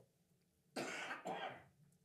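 A man softly clearing his throat: two short, quiet rasps about a second in, with silence around them.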